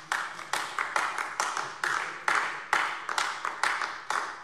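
Sparse applause from a handful of people: separate hand claps about four or five a second with a short echo.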